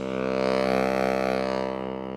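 Background music: a sustained chord with a low, drone-like bottom, held steady.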